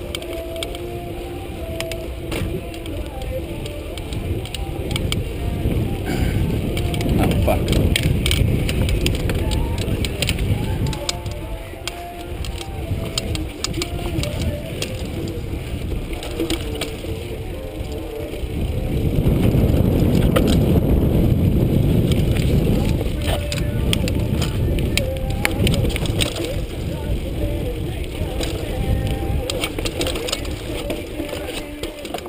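Mountain bike ridden fast down a dirt singletrack: steady tyre and wind rumble with rattling clicks as the bike hits bumps, louder in two stretches about a third and two thirds of the way through.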